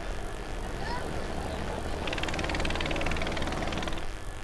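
River car ferry's engine running with a steady low hum among outdoor noise; about halfway through, a fast, even high rattle joins in.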